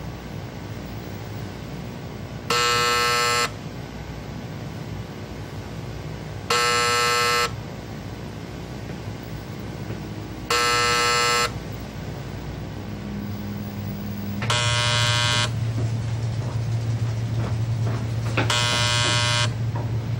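Telephone ringing with a buzzing ring: five rings about a second long, one every four seconds. A steady low hum comes in about three-quarters of the way through.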